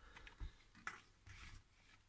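Near silence with a few faint clicks and light knocks as a mountain bike is shifted into place in a car boot.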